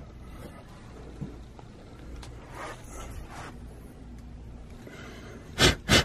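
A faint low background hum, then near the end two short, loud blasts of breath from a man reacting to dust blown into his face.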